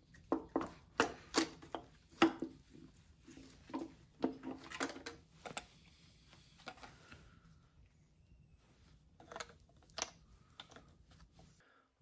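Irregular metal clinks and knocks as a BMW N55 oil pump and nearby timing parts are lifted off the engine block and handled, busiest in the first half, with a few more about nine to ten seconds in.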